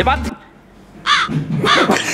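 Small white Pomeranian giving two short, high-pitched yaps, about a second in and again just over half a second later.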